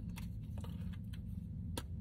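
A few faint clicks of a pen and small knife being handled and slipped into a leather pocket organizer, with one sharper click near the end, over a steady low hum.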